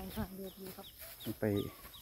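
A bird calling in the background: a short, high, downward chirp repeated about three times a second, with a person's voice over it.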